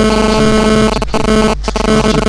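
Loud, buzzy droning tones held on one pitch with a lower note stepping up and down beneath them, over a steady mains hum. The sound cuts out briefly about a second in and again near the end.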